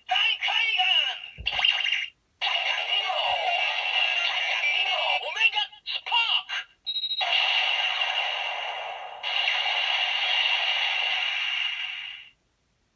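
Electronic sound effects from a DX Gan Gun Hand toy: a synthesized voice calling out and a jingle, played through the toy's small speaker, so the sound is thin with no bass. It comes in several stretches with short breaks about two seconds in and about seven seconds in.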